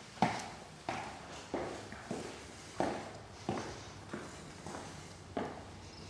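Footsteps indoors: a person walking at an even pace, about nine steps at roughly one and a half a second, each a sharp knock.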